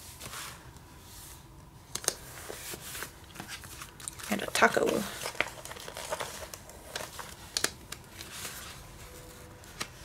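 Paper sticker sheets crinkling and rustling as stickers are peeled off their backing and pressed onto notebook pages, with scattered light clicks and taps. A short murmur of voice comes about halfway through.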